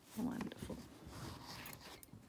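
Crochet thread being drawn through cotton fabric stretched in a wooden embroidery hoop, a soft uneven rasping and rustle of cloth. A brief hum of voice about a quarter-second in is the loudest sound.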